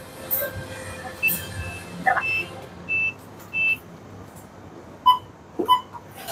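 Short electronic beeps: several brief high beeps around the middle, then two lower, buzzier beeps about half a second apart near the end.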